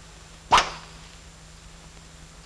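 A single sharp crack of a blow about half a second in, a punishment stroke being dealt.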